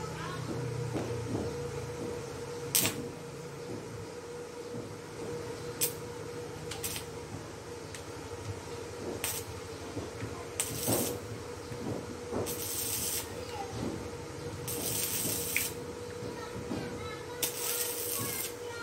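Stick (arc) welder burning electrodes on steel: crackling, hissing bursts as the arc is struck, first a few brief strikes, then longer welds of about half a second to a second each.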